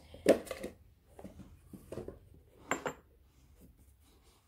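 A glass perfume bottle and its box being moved and set down on a hard surface: a sharp knock just after the start, lighter taps, then a short double clink near the three-second mark.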